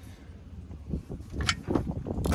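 Clicks and knocks of hands handling metal air-line fittings on a truck transmission, with one sharper click about one and a half seconds in, over a low steady rumble.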